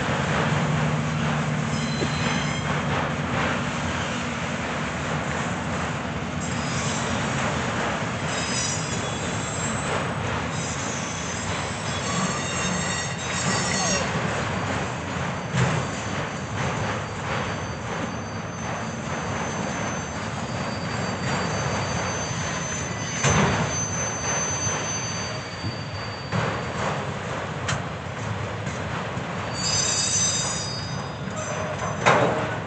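Autorack freight cars rolling slowly past on a switching move, with the steady rumble of steel wheels on rail. Thin high wheel squeal comes and goes through the middle, with occasional clanks; the loudest is a sharp bang about two-thirds of the way through.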